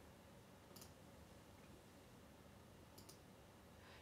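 Near silence: faint room tone, with two faint short clicks, one just under a second in and another about two seconds later.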